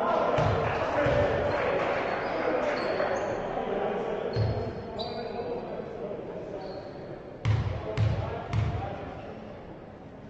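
Basketball dribbled on a wooden court in a large sports hall. There are a few bounces in the first second, then three sharp bounces about half a second apart near the end, each ringing in the hall. Voices carry through the hall in between.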